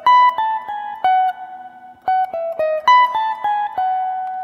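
Clean electric guitar picking a quick sequence of falling three-note groups high on the neck on the top two strings, with pull-offs. The figure comes round twice and its last note rings on.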